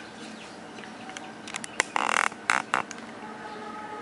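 A printed paper cut-out rustling and crinkling in a few short bursts as it is handled, the loudest burst about two seconds in, over a faint steady hum.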